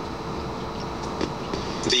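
Steady room hum with a faint even tone and a single faint click a little after a second in; a recorded narrator's voice starts right at the end.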